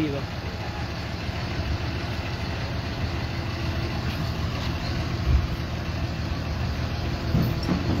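Truck engine idling steadily close by. A short low thump comes about five seconds in.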